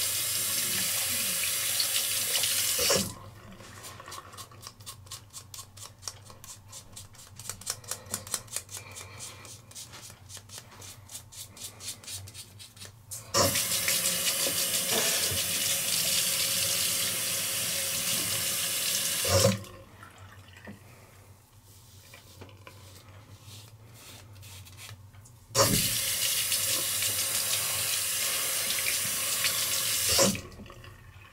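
A hot water tap runs into a sink in three spells, each starting and stopping abruptly, as the razor is rinsed. In the quieter stretches between, a Gillette ProGlide Shield five-blade razor scrapes across scalp stubble in short, quick, repeated strokes.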